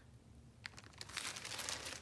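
A plastic zip bag crinkling faintly as it is handled, with a single crackle just over half a second in and denser crinkling through the second half.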